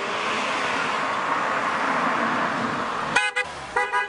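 Black Volvo sedan driving up, a steady rush of road noise, then its car horn honking twice in short toots near the end.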